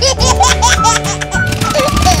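A cartoon voice laughing in a quick run of short giggles for the first second or so, over background music.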